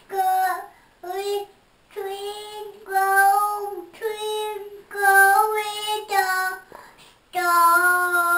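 A toddler singing without clear words: a run of short, steady, held notes, then one long note near the end.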